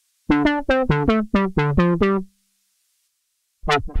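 Roland JUNO-60 software synthesizer (Roland Cloud's ACB recreation) playing a preset as a quick run of short plucky notes, about four a second and stepping up and down in pitch, stopping about two seconds in. After a short silence, near the end, the next preset starts a brighter run of plucked notes.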